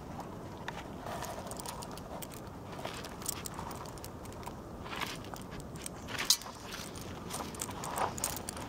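Dog eating dry kibble from a steel bowl and nosing about on gravel: scattered crunches and clicks, the sharpest about three-quarters of the way through.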